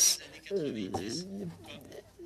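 Quieter speech: two voices overlapping at a lower level, their pitches rising and falling across each other, after a brief louder syllable at the start.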